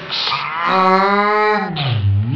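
A cartoon pup's voice in a long drawn-out cheering shout, held on one pitch and then sliding down near the end. It is framed by a short hissing consonant at the start and another just before the end.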